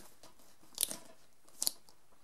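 Plastic VHS cassette case handled in the fingers, giving two short crunchy clicks, one a little under a second in and one near the end.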